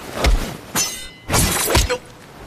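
Fight-scene sound effects: a short thud about a quarter second in, then sharp crashing hits with a breaking sound. The loudest crash comes about halfway through and lasts about half a second.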